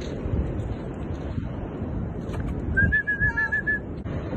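A quick run of about seven short, high whistled notes near the end, over steady wind rumble on the microphone.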